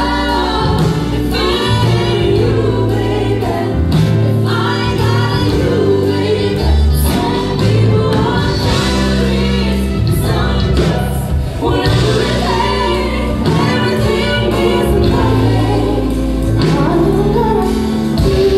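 Live band playing an R&B soul ballad: a female lead vocal with three female backing singers harmonising, over keyboard piano, electric bass and drums.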